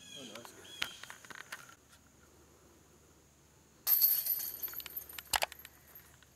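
Chain-link disc golf basket struck by a putted disc: a sudden metallic jangle of the chains about four seconds in, dying away, followed by a sharp clank about a second and a half later.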